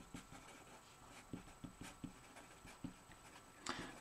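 Felt-tip marker writing on paper: faint, short scratching strokes, irregularly spaced.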